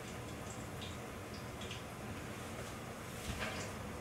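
Cannoli shell deep-frying in hot oil: a faint steady sizzle with scattered small crackles. A light knock comes a little past three seconds in.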